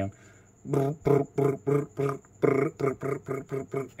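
A man's voice imitating machine-pistol fire by mouth: a long run of short, evenly spaced syllables like "ter ter ter", about five a second.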